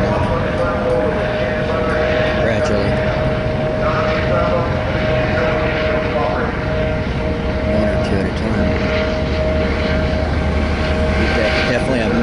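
Helicopter overhead: a steady drone with a constant whine over a low rumble, with faint voices underneath.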